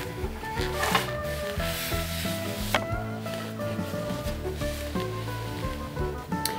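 Background music with steady held notes, over a rubbing, sliding noise as a bobbin-lace pillow is turned on the table, with a single sharp click nearly three seconds in.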